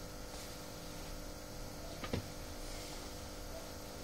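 Steady low electrical hum and hiss of a radio recording in a pause between spoken lines, with one short faint sound about two seconds in.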